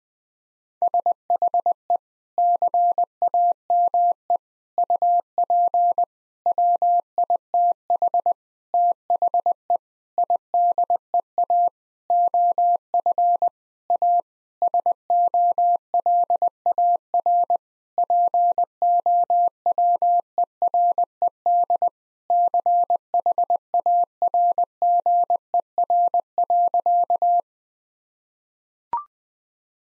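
Morse code at 20 words per minute: a single steady mid-pitched tone keyed on and off in dots, dashes and letter and word gaps, spelling out "She came up with the idea of a solar-powered charger." It starts about a second in and stops shortly before the end.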